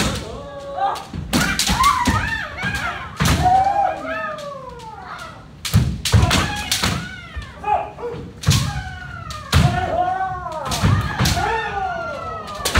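Kendo practice with several pairs at once: bamboo shinai cracking on armour and feet stamping on a wooden floor, several sharp strikes a second, mixed with loud kiai shouts from many fencers that rise and fall in pitch.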